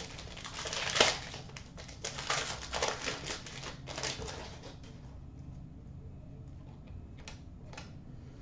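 Trading cards and a plastic pack wrapper crinkling and rustling as they are handled and flipped through, busiest in the first five seconds, then a few light clicks near the end.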